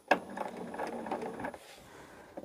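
Bernina sewing machine stitching a seam through quilt fabric pieces. It starts abruptly, runs for about a second and a half, then stops.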